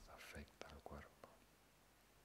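A man's soft, low voice trails off in the first second or so, then near silence: room tone.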